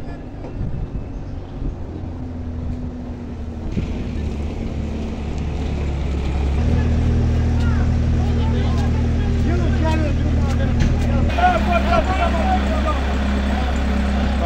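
A vehicle engine idling with a steady low hum, men talking in the background, their voices louder over the last few seconds.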